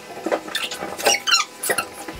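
Inflatable exercise ball squeaking against the stair and the rider's clothes as a person sitting on it shifts it down a step: a quick series of short, high squeaks, loudest about a second in and again near the end.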